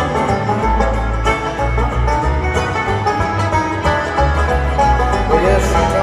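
Live bluegrass string band playing an instrumental break with no singing, plucked and bowed strings over a steady, pulsing bass line.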